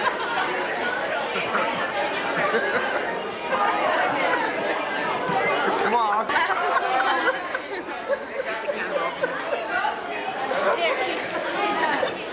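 Overlapping chatter of many people talking at once around dining tables, with no single voice standing out.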